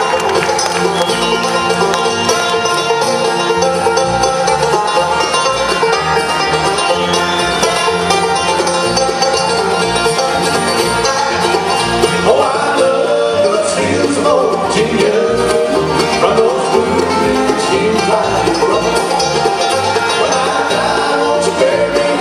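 Live bluegrass band playing, with acoustic guitar, banjo and upright bass.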